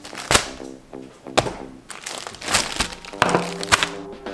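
Background music playing, with several sharp knocks and plastic crinkles as packaged food (a bag of tortillas and a tub of cheese spread) is set down on a stone countertop.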